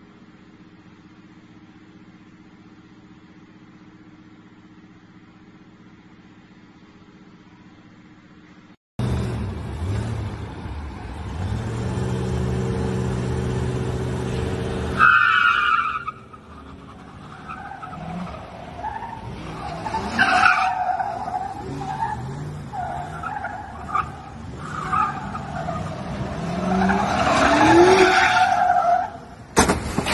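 A low steady hum at first. Then, from about nine seconds in, a pickup truck's engine runs hard, with a sharp tire squeal about fifteen seconds in, followed by repeated skidding and squealing of tires. A sudden crash comes near the end as the truck hits parked cars.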